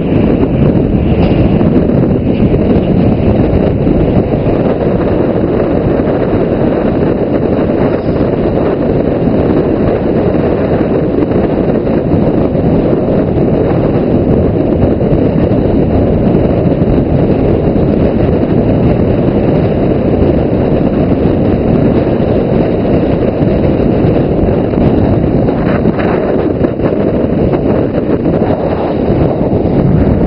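Wind buffeting the microphone of a camera on a vehicle moving at highway speed: a loud, steady, deep rush with road rumble underneath.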